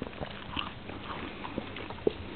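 A dog chewing and crunching a piece of apple: irregular short crunches.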